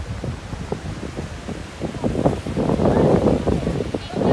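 Wind buffeting the microphone in gusts, louder in the second half, over the wash of surf breaking on the beach.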